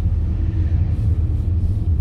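Steady low rumble of a car's engine and tyres, heard from inside the cabin while driving at low speed.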